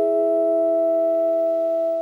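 Background music: a held chord of several pure, steady tones, like an electric piano or vibraphone ringing on with no new notes struck, fading slightly near the end.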